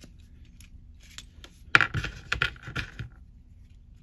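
Small plastic clicks and rattles from a swap-out hand being worked onto an action figure's wrist peg, with a quick cluster of sharp clicks in the middle.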